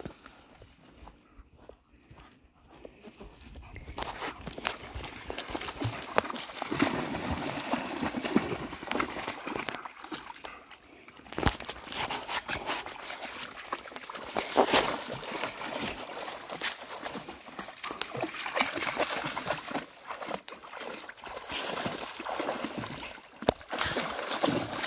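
Two large dogs play-fighting in a shallow muddy pond. Their legs and bodies slosh and splash through the water in irregular bursts, starting a few seconds in.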